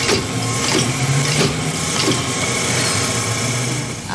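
Cybex isokinetic exercise machine running under a leg-extension workout: a steady mechanical whirr, with a few clicks in the first two seconds.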